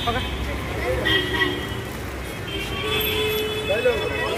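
Busy street with steady traffic rumble and people talking nearby; a held horn tone sounds briefly about a second in and again for over a second near the end.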